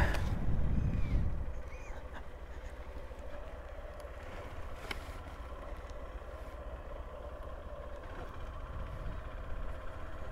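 Honda CB125F's single-cylinder four-stroke engine running at low speed as the bike rolls slowly. The sound is louder for the first second or so, then settles to a steady low rumble.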